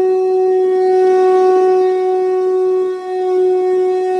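A wind instrument blown in one long, steady note with a noisy, breathy edge, dipping briefly about three seconds in and then carrying on.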